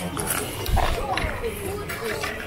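Indistinct voices of several people talking at a distance, no words clear.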